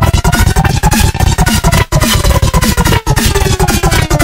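Vinyl record scratched and manipulated on a DJ turntable over a dense electronic beat, the record's pitch sliding up and down. The sound cuts out briefly twice, about two and three seconds in.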